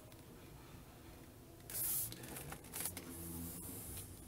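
Faint handling noise of a plastic-bodied laptop being turned over in the hands: quiet at first, then a brief rustle about two seconds in and a few light clicks and knocks after it.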